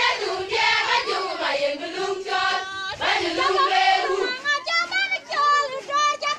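A group of young women's voices singing a song together. About four seconds in, the singing thins and a clearer, smaller group of voices carries the tune.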